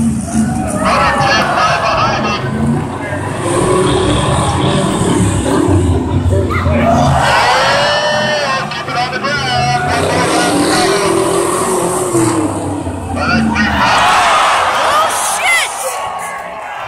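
Lifted pickup trucks' engines running as they race around a dirt track, mixed with music playing and crowd voices.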